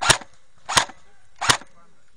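Three sharp shots in quick succession, about two-thirds of a second apart, fired from a close-by airsoft replica gun.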